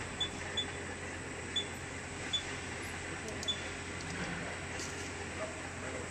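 Short, high electronic beeps from a checkweigher's touchscreen as number keys are pressed: five single-pitch pips at irregular intervals over the first three and a half seconds. They sound over a steady hum of factory machinery.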